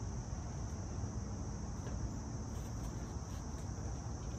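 Crickets chirping in a steady, continuous high-pitched chorus.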